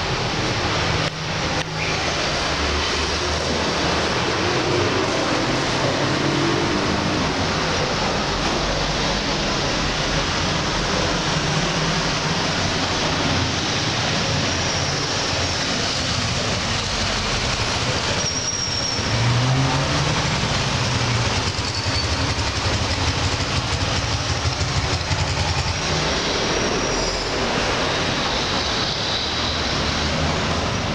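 Steady noise of heavy street traffic, with buses and motorcycles running. A low engine hum swells around the middle, and brief high-pitched squeals come twice, like brakes.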